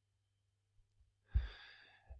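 Near silence, then about one and a half seconds in a man's short, audible in-breath that fades out over half a second.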